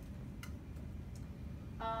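Quiet room hum with a sharp laptop key click about half a second in and a fainter click a little after a second, the keypress that advances the presentation slide. A brief 'uh' comes in at the very end.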